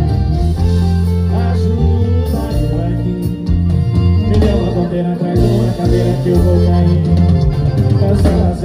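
Live sertanejo band playing through a loud PA system, with heavy bass, guitar and a sung vocal line.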